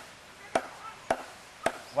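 A hand tool chopping into a block of soft carving wood, with steady sharp strikes about two a second.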